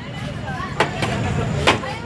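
Sharp knocks, twice, as a plate scoops rice from a large aluminium cooking pot and strikes its side, over background chatter and traffic hum.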